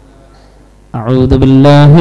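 A short quiet pause with faint room hum. About a second in, a man's voice begins a slow, melodic Arabic recitation in the Qur'anic chanting style, with long held notes, amplified through a microphone.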